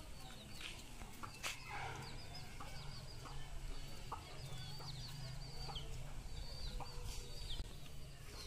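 Chickens clucking and cheeping: a steady run of short, high-pitched falling chirps with a few lower clucks, over a low steady hum.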